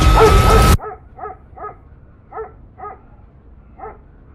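Background music stops abruptly less than a second in, followed by six short animal calls at irregular intervals over a quiet background.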